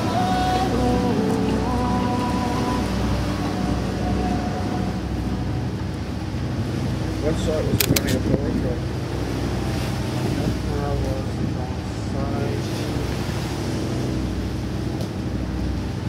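Steady low hum of a boat's engine on deck, with background music fading out over the first few seconds. Indistinct voices come and go, and a few sharp clicks sound about eight seconds in.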